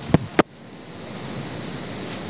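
Handheld microphone being handled and passed along: two short knocks in the first half-second, then a steady rustling hiss from the mic being moved.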